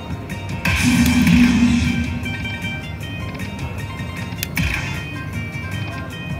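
Aristocrat Dragon Link slot machine playing its hold-and-spin bonus music and chimes during a free spin, with a sudden loud hit about a second in and another, shorter one near the five-second mark as the reels land new symbols.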